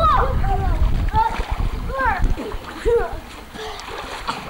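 Children swimming in a pool, splashing, while high-pitched voices call out in short bursts. A low rumble sits under the first second.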